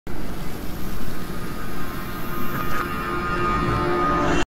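A loud, noisy rushing swell with a low rumble, the sound design of a logo intro, with a few steady tones coming in about halfway through.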